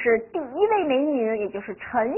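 Speech only: a woman talking in Mandarin Chinese.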